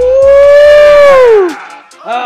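Background hip-hop music, over which a loud, long wail rises and then falls in pitch for about a second and a half before dying away.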